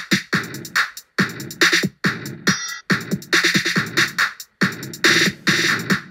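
GarageBand Drummer trap beat ('Trap Door' preset) playing back, with extra percussion and hi-hats at maxed-out complexity and volume. The kit breaks off briefly about two and a half seconds in.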